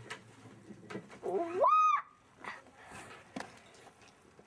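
A young child's voice sliding upward into a short high squeal about a second in, with a few light knocks around it.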